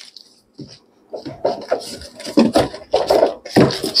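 A cardboard packing sheet scraping and rubbing against an aluminium case as it is pulled out: a run of irregular scuffs and rustles starting about a second in.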